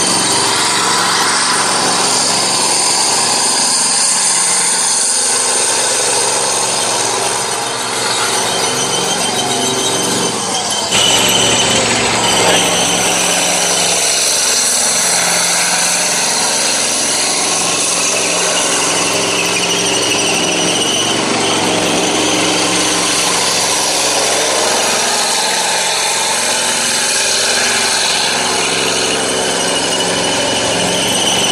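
K1A1 main battle tank on the move: a steady diesel engine drone under the high whine, squeal and clatter of its tracks as it drives and turns. The sound jumps louder for a moment about eleven seconds in.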